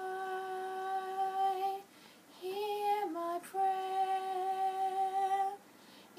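A girl singing solo and unaccompanied, holding long sustained notes with a short breath about two seconds in and again near the end.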